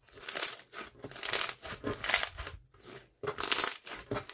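Beaded green slime squeezed and kneaded by hand, giving a run of crackly, crunchy squishes as the beads are pressed through it, with a short pause about three seconds in.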